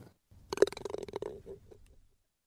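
Logo-animation sound effect: a rapid run of clicks over a low steady tone, starting about half a second in, lasting about a second and a half and fading out.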